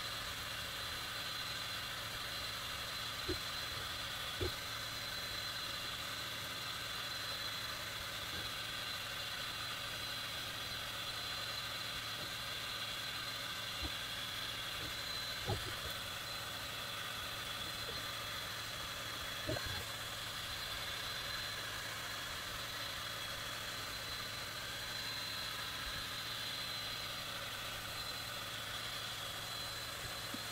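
Creality Falcon2 22 W laser engraver running an engraving job on plywood: a steady whir and hiss with a high, even whine, and a few faint clicks.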